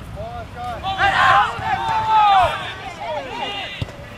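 Several voices shouting and yelling over one another, with some long drawn-out calls, as a soccer attack goes in on goal. A single short knock comes near the end.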